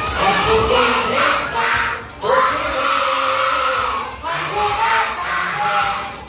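A large group of children shouting and singing together over loud music, in three long drawn-out calls with short breaks about two and four seconds in.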